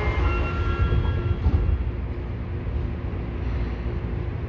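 Tokyo Metro Namboku Line subway car doors sliding shut. The train's steady rumble and low hum follow as it starts to pull out of the station.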